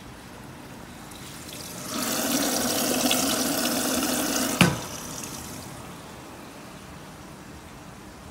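Water rushing into a commercial washer's detergent dispenser drawer, flushing the washing powder down into the drum, for about three seconds. It ends in a sharp click, after which the flow dies away.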